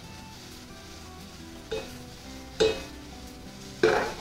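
Diced tomatoes and garlic sizzling in a nonstick skillet over a gas burner, under soft background music. Three brief louder sounds come about a second apart.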